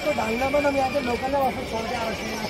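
A man talking, his voice rising and falling; no air-rifle shot stands out. A faint steady high-pitched tone runs underneath.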